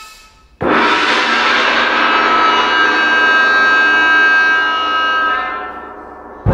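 Live chamber music for oboe, violin and percussion: a sudden loud sustained chord of many pitched tones comes in about half a second in, is held for about five seconds, and fades near the end.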